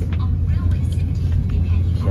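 Steady low rumble of a high-speed train's passenger cabin while the train is running.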